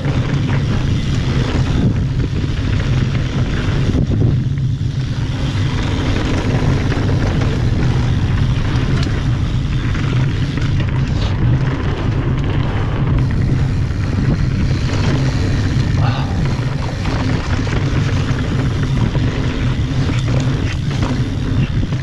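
Wind buffeting an action camera's microphone and mountain-bike tyres rolling over a dirt trail on a fast descent, a steady loud rush with a few brief rattles from the bike.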